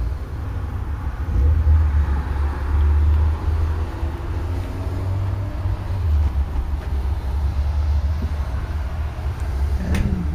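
Low, uneven rumble of handling noise on a handheld camera's microphone as the camera is swung and carried, swelling and dipping with no distinct knocks.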